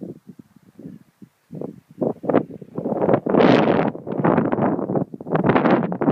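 Wind gusting across the microphone in uneven buffets, building to its strongest about halfway through and again near the end.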